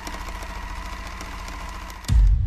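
Title-intro sound effect of a machine running: a steady buzzing hum with fast, even ticking.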